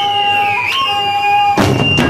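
Live flute holding a long note, with a short bend in pitch about halfway through. Near the end the full rock band, drums with a cymbal hit and electric guitars, comes in loudly.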